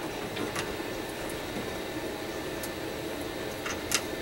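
Small clicks and taps of a 3D-printed plastic foot being fitted onto a 3D printer's metal frame corner, with one sharper click near the end, over a steady background hum.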